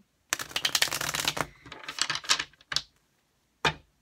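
Tarot cards being riffle-shuffled: a fast rattle of cards falling together for about a second, then a sparser run of card flicks, and a single short tap near the end as the deck is squared.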